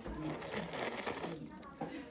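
Background voices in a small dining room, with a burst of hissing, rattling noise for the first second and a half, then a few sharp clicks.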